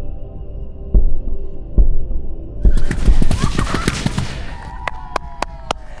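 Methane-filled balloons bursting into fireballs one after another: deep booms about once a second, then from about halfway a dense run of crackling pops, with a few single sharp cracks near the end.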